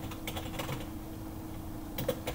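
Computer keyboard typing: a few keystrokes, spaced irregularly.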